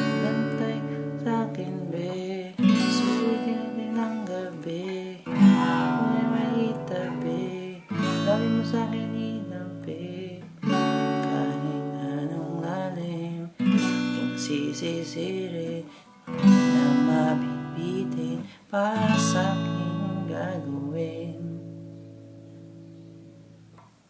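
Acoustic guitar played with one downstroke per chord, cycling through D major 7, B minor 7, E minor 7 and A6. There are eight struck chords about two and a half seconds apart, each left to ring, and the last fades away near the end.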